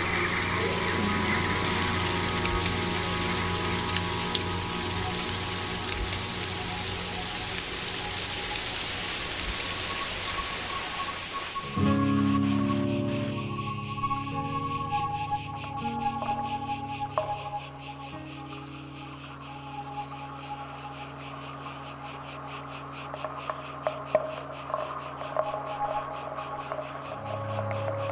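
Ambient soundscape of held tones over a hiss. About 12 seconds in it changes abruptly to new held low tones with a fast, even cricket chirring above them.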